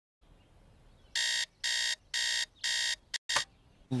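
Digital alarm clock beeping four times, about two beeps a second, each a short bright buzz, followed by a short click.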